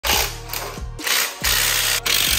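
Background music with a heavy beat, mixed with a cordless Milwaukee power tool running in loud bursts on exhaust manifold bolts.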